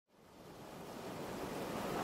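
Steady rush of waves on open water mixed with wind noise, fading in from silence and growing louder.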